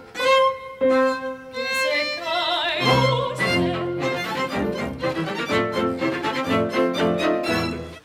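A rehearsal orchestra's bowed strings playing. For the first three seconds a few held violin notes sound, some with vibrato. Then the full section comes in with cellos and basses underneath, playing a steady rhythmic accompaniment, and the playing cuts off suddenly at the very end.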